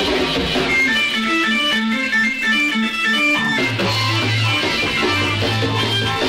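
Instrumental passage of a 1960s garage rock record: an electric guitar picks a run of short notes, and a bass guitar comes in about halfway through.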